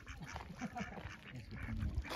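Ducks quacking, a series of short calls.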